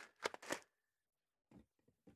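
A few faint, brief rustling clicks of objects being handled in the first half second, then near silence.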